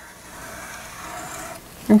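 Dry-erase marker drawing a long wavy line on a whiteboard: a faint, steady rubbing hiss. A woman's voice starts speaking right at the end.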